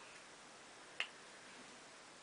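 A single sharp click about a second in, as a small eyeshadow compact is snapped open; otherwise quiet room tone.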